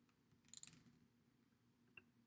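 A short crackle of small clicks about half a second in, with one faint click near the end, in an otherwise near-silent room.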